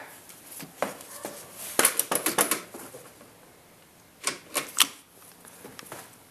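Scattered sharp clicks and knocks of handling, in a cluster about two seconds in and another about four seconds in; the engine is not yet running.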